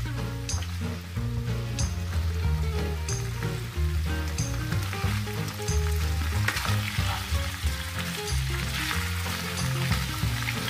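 Paneer cubes sizzling as they shallow-fry in oil on a high gas flame in a nonstick pan, stirred and turned with a spatula. Background music with a low bass line and a steady beat plays over it.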